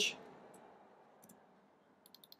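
Two faint clicks from computer input, under a second apart, against quiet room tone.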